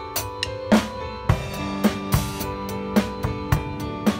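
Acoustic drum kit played along to recorded backing music with sustained chords: just under a second in, a loud hit with a cymbal wash brings the drums in, then a steady groove of bass drum and snare strokes.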